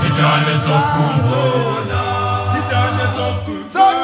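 Male a cappella choir singing isicathamiya-style close harmony: a held low bass part under higher voices that glide between notes. The singing dips briefly and a new phrase comes in just before the end.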